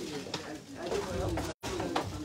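Faint murmur of voices in a hall between announcements, with a low coo-like voice sound in it. The audio drops out completely for a split second about one and a half seconds in.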